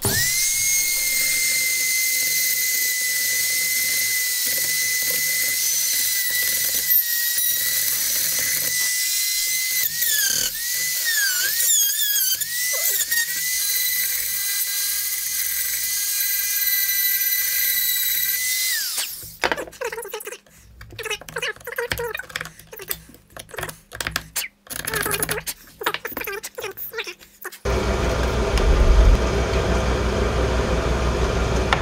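Corded high-speed rotary tool grinding, roughing up the bedding area of a rifle stock for bedding compound: a steady high whine whose pitch dips several times around the middle as the bit bites in and loads up. From about two-thirds of the way in, the tool runs in short, irregular bursts. Near the end a deeper, steady rushing noise takes over.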